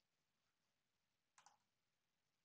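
Near silence, broken about one and a half seconds in by a faint, quick double click of a computer mouse button.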